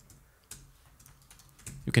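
Keystrokes on a computer keyboard as code is typed: a few scattered clicks, the clearest about half a second in.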